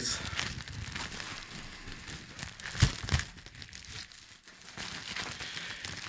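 A grey plastic mail sack being handled and unfolded, a steady run of crinkling and rustling with two sharper crackles near the middle.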